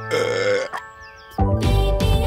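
A cartoon baby's short burp, about half a second long, over soft background music. A louder, busier jingle cuts in about a second and a half in.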